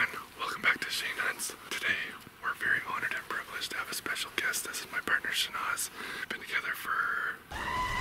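Whispered speech: a person talking quietly in a hushed voice.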